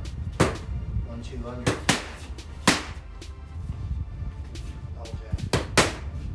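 Boxing gloves smacking hand-held training pads, a single punch or a quick pair at a time, about six sharp hits in all, over background music.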